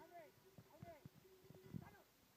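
Faint sounds of a flock of sheep being driven by a sheepdog: several short calls that rise and fall in pitch, mixed with soft knocks and thuds of movement.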